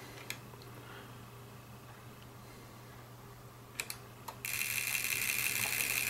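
A click as the autotuner's tune button is pressed, a couple of clicks a few seconds later, then, about four and a half seconds in, the LDG Z-817 autotuner's relays suddenly start chattering rapidly and without a break as the radio transmits into it and the tuner searches for a match.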